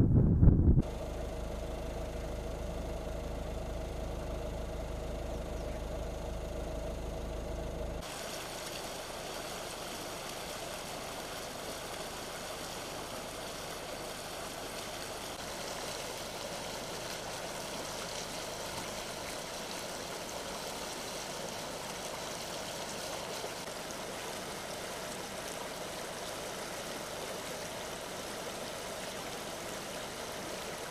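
A brief low wind rumble on the microphone, then a steady low hum for several seconds. After that, a shallow stream runs over stones in a steady rush of water.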